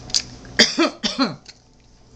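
A woman coughs briefly: two or three short bursts falling in pitch, just after a light click from the plastic wax-melt cup she is opening.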